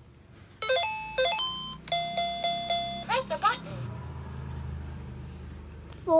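Electronic beeping jingle from a Game Craft 'My Intelligent Laptop' children's toy laptop. A quick run of notes comes about half a second in, then four repeated beeps, then a brief warbling sound.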